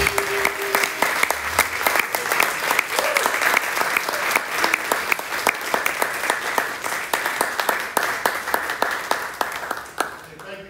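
Audience applauding at the end of a jazz band's tune.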